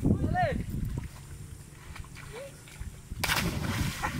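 A person jumping from an overhanging tree branch into estuary water: one loud splash about three seconds in, with spray running on to the end.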